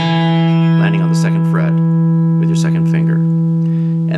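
Fender Stratocaster electric guitar holding one sustained note, the E hammered on at the second fret of the open D string to close the phrase. It rings steadily the whole time.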